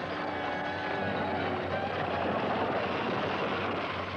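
Horses at a gallop with a stagecoach's wheels running over rough ground: a dense, steady clatter and rumble with no let-up.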